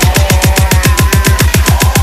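Electronic dubstep track in its build-up: a rapid roll of deep kick-drum hits, about eight a second, under a held synth tone.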